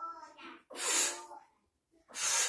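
A short voiced sound, then a sharp, hissy forceful exhale about a second in, the breath of someone doing push-ups.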